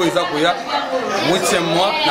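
Speech: a man talking, with other voices behind him.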